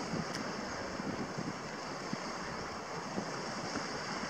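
Steady wind on the microphone mixed with the wash of sea waves against a rocky shore.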